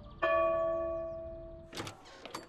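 A large clock-tower bell tolls, striking once a moment in and ringing on with a slowly fading hum. Near the end there are a couple of short knocks.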